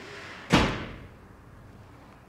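A single sharp thud or slam about half a second in, dying away over about half a second with a short echo.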